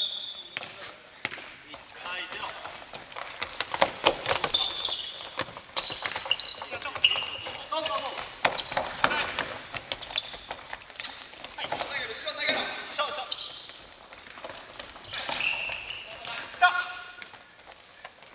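Futsal being played on a wooden gym floor: the ball being kicked and bouncing with sharp knocks throughout, sneakers squeaking in short high chirps, and players calling out now and then.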